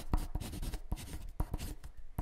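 Dry scratching and rubbing broken by several sharp, irregular taps, as of a pen or pencil working on paper.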